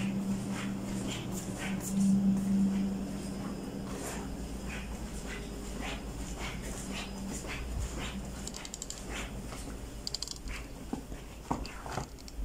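Footsteps of a person walking through a house, evenly spaced, with a steady low hum under them that is loudest about two seconds in and fades out after about seven seconds. Short high rattles come near the end.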